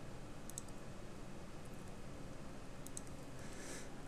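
Faint clicks of computer keyboard keys and mouse buttons over a low steady hiss, a pair of clicks about half a second in and another pair near three seconds.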